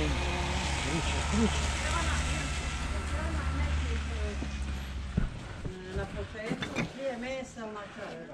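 IMT 539 tractor's diesel engine idling steadily, then stopping with a knock about five seconds in.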